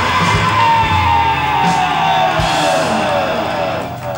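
Live rock band playing loud at the close of a song: guitars, drums and a long pitched note sliding slowly downward in pitch, dying away near the end.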